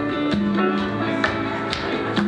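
Live band music led by a semi-hollow electric guitar, with bass guitar underneath and a steady beat of sharp strikes.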